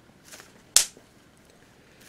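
A single sharp click a little under a second in, after a faint brief hiss.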